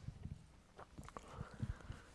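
Faint footsteps of a man walking across a room: several soft, irregular low thuds.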